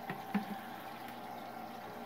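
Aquarium aerator bubbling water steadily and quietly, with a couple of faint clicks near the start.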